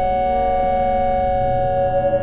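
Electronic drone music: several held synthesizer tones sounding together without change, two middle-pitched notes loudest, over a low rumble.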